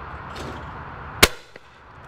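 A single shotgun shot about a second in from an over-and-under shotgun fired at a clay target: one sharp crack with a short tail.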